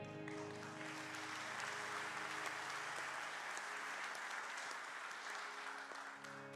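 A congregation applauding as the last chord of a worship song cuts off just after the start; the clapping runs steadily and tapers slightly near the end as the next song's sustained low notes come in.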